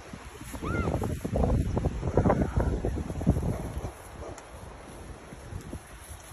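Wind buffeting the phone microphone, mixed with rustling and swishing as the phone carrier walks through tall grass. It is heaviest from about half a second in to about three and a half seconds, then eases to a lighter rustle.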